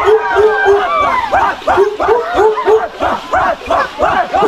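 A group of men's voices chanting in short, rhythmic shouted calls, about three or four a second.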